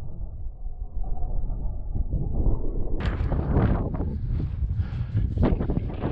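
Strong wind buffeting the microphone, a heavy low rumble. About halfway through it suddenly turns into a broader, brighter rush.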